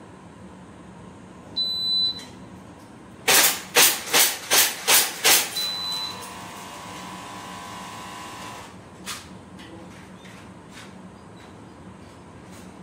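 A shot-timer start beep about a second and a half in, then a rapid string of about seven sharp shots from airsoft pistols fired at small target plates, with a second short beep right after the last shots marking the end of the four-second time limit. A steady hum follows for a few seconds.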